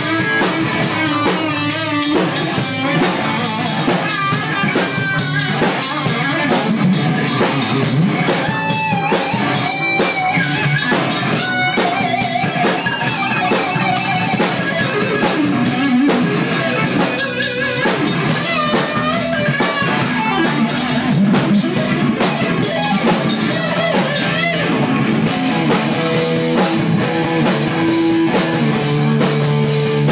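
Rock band playing loudly: bass guitar and guitar lines over a drum kit, steady throughout.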